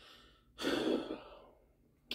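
A man sighing close into a handheld microphone: a faint breath in, then a long breath out about half a second in that fades away over a second.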